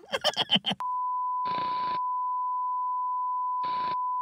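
A television colour-bars test-pattern tone: one steady, high-pitched beep that starts just under a second in, after a short laugh. It is broken twice by short bursts of static hiss.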